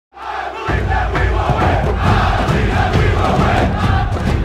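Large crowd cheering and roaring, loud and steady, with a heavy low rumble joining in under it shortly after the start.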